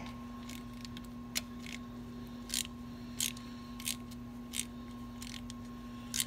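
Short bursts of clicks from a ratchet wrench being worked in strokes, about one every half second to second, over a steady low hum.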